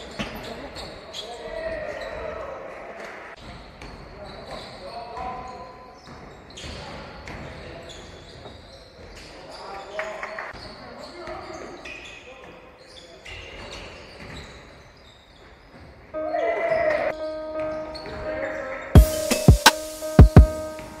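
Basketball game sound on a hardwood court: the ball bouncing in short knocks, with voices calling out in the echoing hall. About sixteen seconds in, music starts abruptly, with heavy drum hits near the end.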